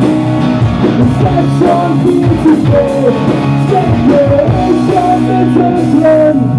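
Rock band playing live and loud: distorted electric guitar, electric bass and a drum kit keeping a driving beat.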